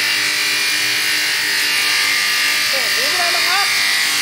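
Multiple-spindle woodworking moulder running, its cutter heads spinning at speed with a steady, high-pitched machine noise. A brief voice cuts in about three quarters of the way through.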